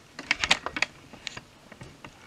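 Quick, irregular plastic clicks and taps from a laptop's plastic case being handled and turned over. There is a cluster in the first second and a few more later.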